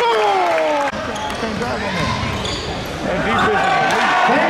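Basketball being dribbled on a gym court, with voices in the hall. A sharp cut in the sound comes just before one second in.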